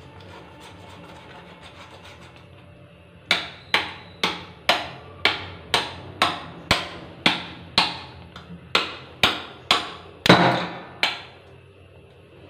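Kitchen knife scraping a large whole fish over a steel sink: a run of quick, evenly spaced strokes, about two a second, beginning about three seconds in and stopping shortly before the end, with one stroke louder than the rest near the end.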